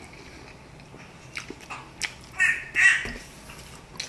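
Mouth sounds while eating: a couple of faint clicks, then about halfway through two short nasal vocal sounds in quick succession from the eater.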